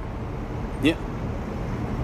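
Steady low rumble of a moving taxi's engine and road noise, heard from inside the car's cabin.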